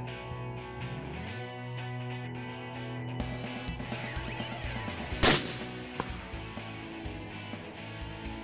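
Background music plays throughout. About five seconds in, a single sharp rifle shot from a scoped bolt-action rifle fired from the prone position stands out as the loudest sound.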